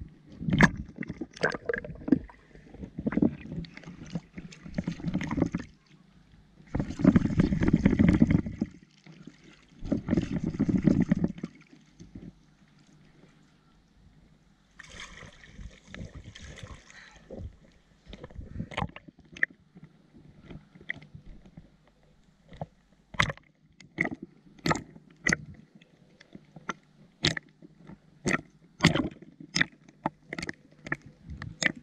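Lake water sloshing and splashing at the surface as a sand scoop is worked through shallow water, with two longer, heavier splashes about seven and ten seconds in. In the second half comes a run of sharp clicks and knocks.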